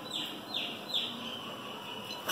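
A small bird chirping: a quick run of short, falling chirps in the first second, then a fainter trailing note.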